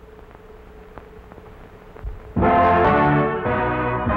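A big band's brass section starts playing suddenly a little over two seconds in, full chords of trumpets and trombones. Before that there is only a low steady hum with a few faint ticks.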